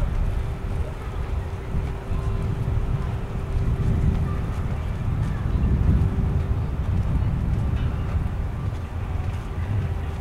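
Wind buffeting the microphone of a moving handheld camera: an uneven, gusting low rumble, with a faint steady hum running underneath.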